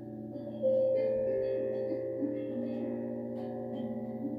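Singing bowls ringing in long, overlapping tones, with a fresh strike about half a second in that starts a louder tone, followed by more tones joining around a second in.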